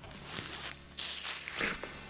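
Several people biting into and chewing apples close to microphones, a string of irregular crisp crunches, over a low steady hum.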